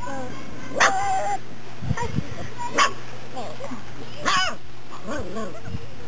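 Doberman puppies yelping and barking: three short, high-pitched yelps, about a second in, near the middle and again a little later, with softer puppy whines and a child's voice between them.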